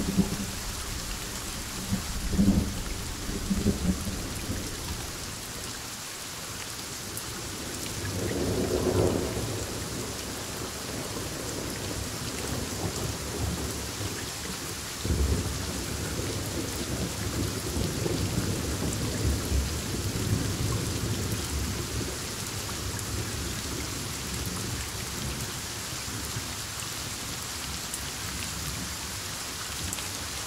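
Thunderstorm: rain falling steadily while thunder rumbles several times, a few short rumbles in the first four seconds, another about eight seconds in, and a long rolling rumble from about fifteen to twenty-two seconds.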